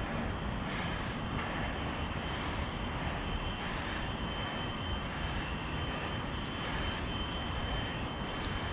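A steady rushing noise with no clear pitch, with faint soft scuffs about once a second.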